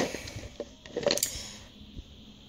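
Soft handling noises: a few light clicks and a short rustle about a second in, as a plastic packet is picked up and moved.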